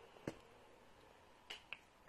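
Near silence with three faint clicks: one sharp click about a quarter second in, then two softer ones close together near the end.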